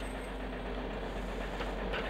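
Steady low rumble and hiss of outdoor background noise with no distinct events.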